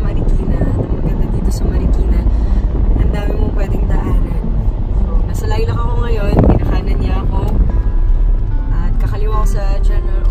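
Steady low rumble of a car on the move, heard from inside the cabin, under music and a woman's voice singing along, with a long gliding note about six seconds in.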